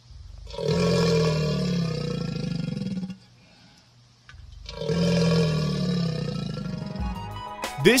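Alligator growling: two long, low growls, each about two and a half seconds, with a short pause between them.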